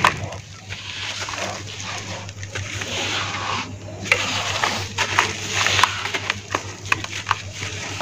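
Hands squeezing and crumbling lumps of red dirt under water in a basin: wet squelching and sloshing in irregular bursts with small crackles, pausing briefly about halfway through. A steady low hum runs underneath.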